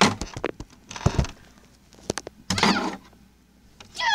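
Closet door being opened: a few knocks and clicks, then a short scraping slide about two and a half seconds in.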